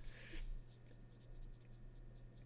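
Faint scratchy brushing of a paintbrush being reloaded with paint on a palette, strongest in the first half second, followed by a few small ticks, over a low steady hum.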